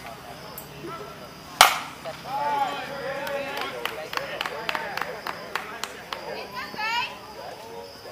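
A softball bat hitting the ball with one sharp, loud crack about a second and a half in, followed by players shouting and a string of sharp taps.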